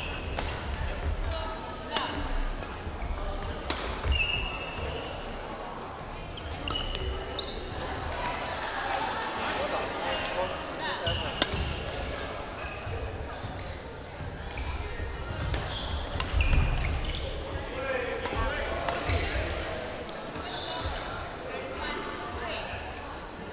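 Echoing gymnasium sound during badminton play: scattered sharp racket hits on shuttlecocks, short high shoe squeaks on the hardwood floor, and a steady murmur of voices.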